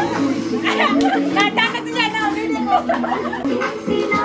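Music for dancing playing, with a group of people chattering and calling out over it.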